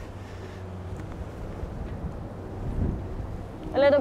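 A spade digging a young camellia out of a bark-mulched bed of soil, with a soft low thud about three seconds in as the root ball is worked loose. Under it runs a steady low rumble of wind on the microphone, and a man starts speaking right at the end.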